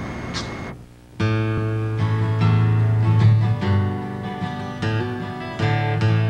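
Outdoor background noise for under a second, then a cut to live acoustic music starting about a second in, led by a strummed acoustic guitar with strong low notes.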